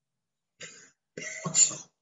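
A man coughing twice, briefly: a faint short cough, then a louder, longer one near the end.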